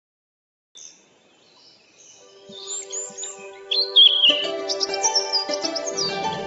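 Bird chirps and tweets over background music that fades in, growing fuller about four seconds in.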